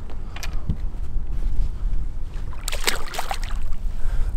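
Water splashing beside a fishing boat as a northern pike is released over the side, loudest about three seconds in, over a steady low rumble.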